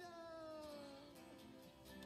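A B. Meowsic cat-shaped toy keyboard giving one long meow that slides down in pitch, over soft background music.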